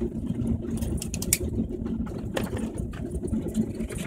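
Airliner cabin noise as the plane rolls slowly along the ground after landing: a steady low rumble with a faint steady hum. Short clicks or rattles come through about a second in and again midway.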